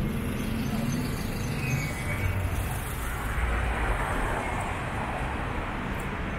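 Street traffic noise, a steady rushing of passing cars with a low rumble, swelling for a few seconds in the middle.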